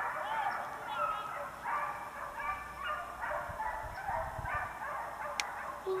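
A pack of hunting hounds baying, their short, overlapping calls repeating throughout, typical of dogs running a deer.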